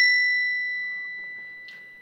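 A single bright chime, struck just before and ringing on one clear high note with a few fainter higher overtones, fading away steadily.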